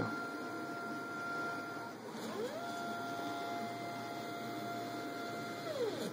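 Stepper motors of a mUVe 1 resin 3D printer whining as its axes move at speed. The steady whine stops about two seconds in, ramps up in pitch, holds for about three seconds, then ramps down near the end as the motors accelerate, run and decelerate.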